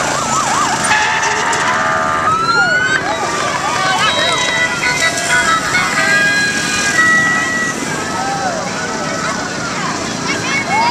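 A vehicle siren yelps briefly, then a horn sounds a steady chord for about a second and a half. After that come a crowd's voices and many short, rising-and-falling whistle- and siren-like calls.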